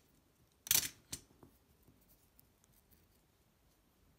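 A short, sharp handling noise a little under a second in, then a fainter click, as stripped copper wire ends are handled close to the microphone; otherwise near silence.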